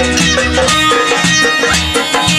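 Azerbaijani folk dance tune played live: a clarinet leads with sustained notes, and a frame drum beats a steady rhythm.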